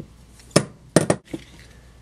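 Sharp metallic clinks from handling Roper Whitney hand sheet-metal notchers: one click about half a second in, a quick pair around one second, then a fainter one.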